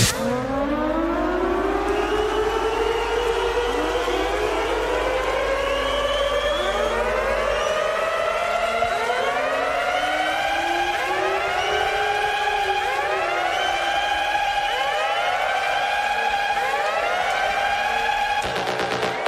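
Siren wails in an electronic DJ mix: many overlapping rising-and-falling sweeps that pile up and grow denser over the passage, with no beat. A low hum runs under them until about eight seconds in.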